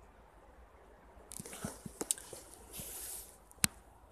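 Quiet handling noise from the hand-held camera being moved: a soft rustle through the middle with a few small clicks, and one sharp click near the end.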